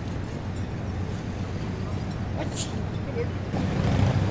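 Outdoor city ambience: a steady low rumble of engine traffic with faint voices, a short hiss a little past halfway, and the rumble swelling louder near the end.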